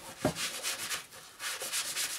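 A soapy sponge scrubbing saddle soap into the leather of an old German army jackboot (Knobelbecher) in quick repeated strokes, with a short pause about a second in.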